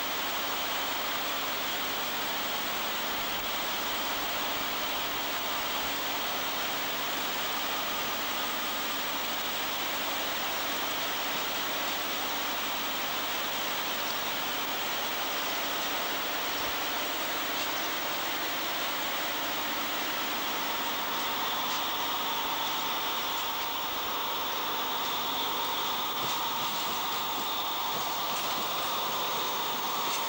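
RENFE class 354 diesel locomotive hauling a Talgo Pendular train as it approaches and passes close by: a steady rumble and hiss that grows fuller in the last third, with faint clicks of the wheels near the end.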